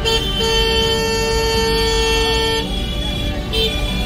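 Vehicle horn sounding in busy street traffic: a short toot, then one steady blast held for about two seconds, then another short toot near the end.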